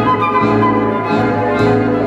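Chamber sextet of flute, clarinet, piano, double bass, accordion and saxophone playing a tango in classical style, with several instruments sounding together over a steady bass line.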